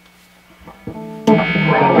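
1991 Gibson Flying V electric guitar played through a distorted amp: a faint steady amp hum, then a single note about a second in, followed by a loud distorted chord struck and left ringing.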